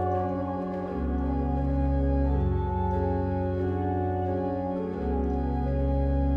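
Church organ playing sustained chords on its own, with deep pedal bass notes. The harmony changes about a second in and again about five seconds in.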